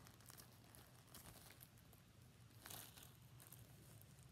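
Faint crinkling of a loose plastic shrink-wrap sleeve being handled, with a few soft rustles over near silence.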